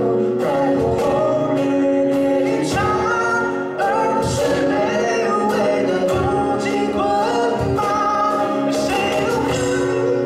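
Live acoustic band performance: male singing over two strummed acoustic guitars, with a cajon keeping the beat.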